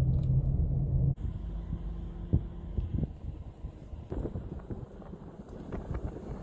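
Low road and engine rumble heard from inside a moving car, with a steady low hum for about the first second. It then drops suddenly to a quieter rumble broken by a few soft knocks.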